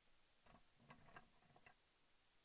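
Near silence, with a few faint short clicks about half a second to a second and a half in.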